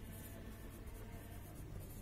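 Faint scratching of a pen writing on a workbook page.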